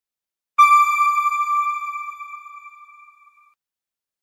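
A single chime from a news outro sting: struck about half a second in and ringing out, fading away over about three seconds.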